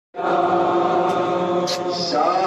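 Noha, a Shia mourning lament, chanted by male voice on long held notes; it cuts in abruptly just after the start.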